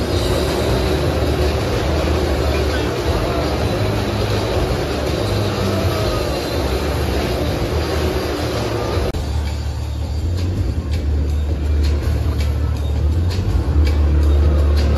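Motorcycle engines running inside a steel-mesh globe of death, a steady low rumble throughout. About nine seconds in, the busier higher sound drops away, leaving mostly the low engine rumble with scattered clicks.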